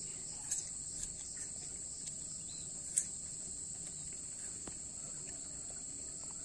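Steady high-pitched chorus of insects, a continuous cricket-like trill, with a few faint clicks and one sharper click about three seconds in.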